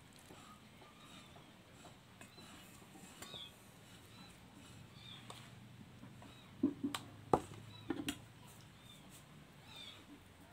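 Two short animal calls, likely a cat's, about two-thirds of the way in, with a single sharp knock between them, most likely a spoon or bowl striking a metal pot. Faint, light handling sounds lie under the rest.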